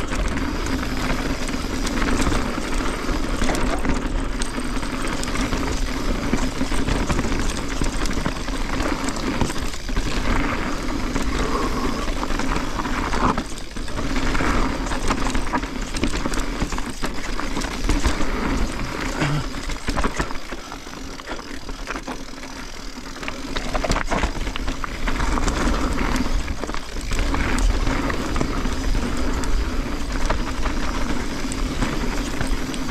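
Mountain bike riding down a dirt and stone trail: tyres rolling over the ground and the bike rattling and knocking over bumps and rocks. The noise eases for a few seconds about two-thirds of the way through, then picks up again.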